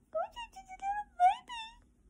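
Dog whining: a run of about five short, high-pitched whines, several of them rising in pitch.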